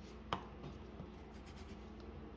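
Pencil scratching across drawing paper in quick sketching strokes, with one sharp tap about a third of a second in and a lighter tick about a second in.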